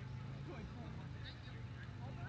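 Indistinct distant voices over a steady low hum.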